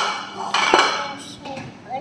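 Dishes clattering and clinking as a small child handles a plate and a bowl on a tiled floor, with a sharp clink about three-quarters of a second in.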